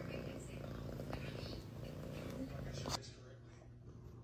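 A cat purring, faint and low, cut off abruptly about three seconds in.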